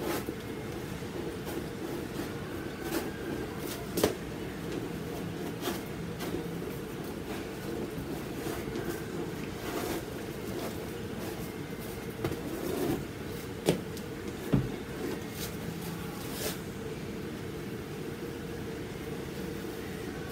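A paintbrush dabbing and scrubbing acrylic paint onto a heavily textured canvas: light scratchy strokes and scattered taps over a steady low room hum, with a few sharper knocks about 4 seconds in and twice in the middle.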